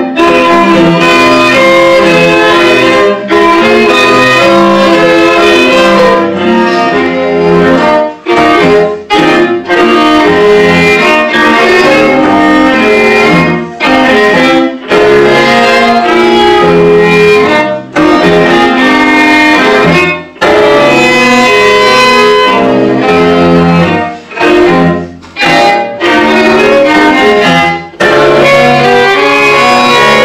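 A string quartet playing held, slowly changing microtonal chords from a 13-limit just-intonation score, in a practice-room recording. The sound drops out briefly several times.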